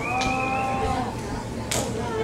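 A voice holding one long, steady call for about a second, followed near the end by a brief sharp noise.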